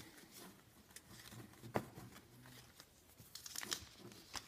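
Faint crinkling and tearing of the wrapping on a stack of trading cards as it is opened by hand, with a single sharp click a little before halfway and a flurry of crinkles near the end.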